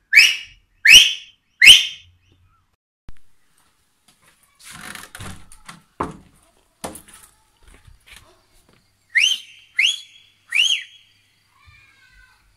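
Loud rising whistles, three in quick succession, then some rustling and a couple of knocks, then three more rising whistles, the last one rising and falling.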